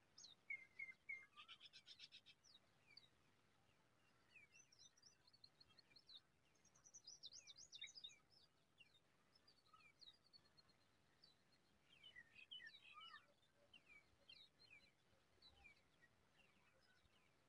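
Faint woodland birdsong: several songbirds chirping and singing in short sweeping notes, with a brief buzzy trill about two seconds in and a quick run of high notes around the middle.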